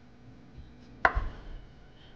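Chef's knife cutting through a mango and knocking once on a wooden cutting board about a second in, followed by a short dull thud.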